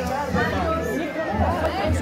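Crowd chatter: several people talking at once close by, over a steady low hum.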